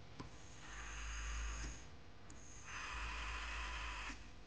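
Small brushed DC motor with a plastic propeller whirring faintly in two bursts of about a second each, switched on by a push button through a BC547 transistor driver running from a 9 V battery. A short click comes just before each burst.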